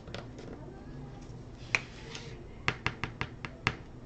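Small plastic pot of Brusho watercolour crystals being handled: one sharp click, then a quick run of about six light clicks and taps near the end.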